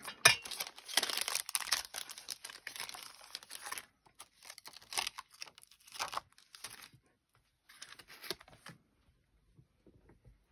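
Clear plastic stamp sheets being handled: a busy stretch of crinkling plastic for about four seconds, then shorter bursts, dying away about nine seconds in.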